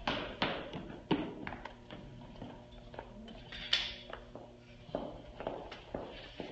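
Scattered soft taps and knocks of people and a dog moving about on rubber floor matting, the sharpest near the start and about a second in.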